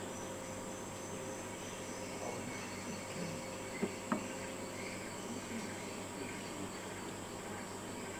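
Tropical insects, crickets or cicadas, keep up a steady, faint, high-pitched drone. Two faint clicks come about four seconds in.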